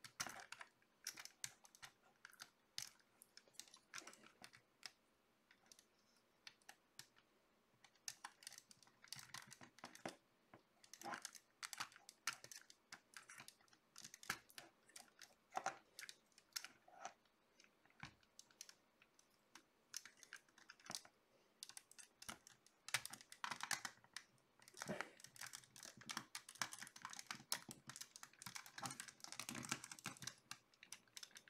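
Faint, irregular clicking and rattling of small plastic parts as a Sentinel VR-052T 1/12-scale action figure is handled, its trigger hand being pushed into place on the bike. The clicks come thicker over the last several seconds.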